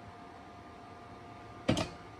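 Quiet classroom room tone with a faint steady hum, then a single short, sharp knock near the end.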